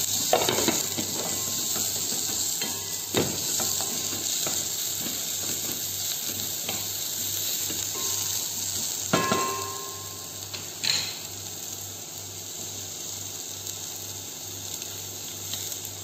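Green onion sizzling in hot olive oil in a pot, stirred with a wooden spatula, with a few sharp knocks of utensils against the pots. The sizzle eases off somewhat about ten seconds in.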